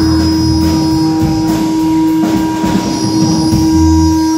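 A live blues band holds one loud, steady tone over irregular low notes from the band. A guitarist on stage plugs his ears against it.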